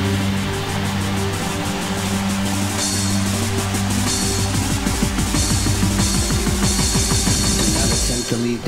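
Hardcore dance music from a DJ mix: a held bass note under drum hits that grow denser as the track builds.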